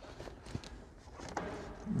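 Faint clicks and rustles of a thin power cable being pushed through the plastic trim behind a car's lowered glove box.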